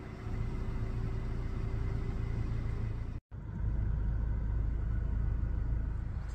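Steady low rumble of a car driving on a dirt road, heard from inside the cabin. The sound drops out for a moment about three seconds in and comes back louder.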